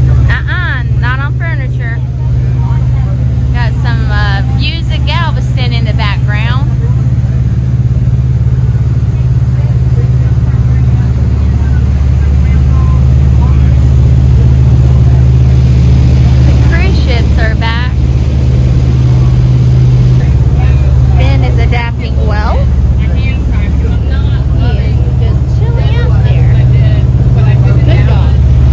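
Outboard engines of a motorboat running at steady speed: a constant low drone, with the rush of wind and water over it.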